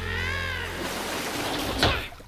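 Cartoon water splashing and spraying over a character, with a short high squeal from the character at the start and a sharp smack near the end.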